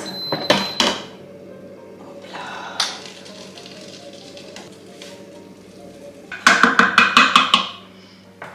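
Lid of a Silvercrest multicooker (electric pressure cooker) being unlocked and lifted off, with a few sharp clicks in the first second and a knock a little later, over quiet background music. A louder rhythmic burst of strokes comes near the end.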